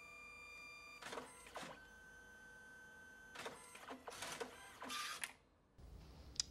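DNP ID photo printer, a dye-sublimation printer, printing passport photos and faint throughout. A steady whine runs for the first second, then a few mechanical clicks, a second steady whine at a different pitch, and a run of clicks and whirs as the print feeds out.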